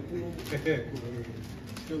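Quiet, indistinct voices murmuring in a room, with a short low-voiced phrase about half a second in and another starting just before the end.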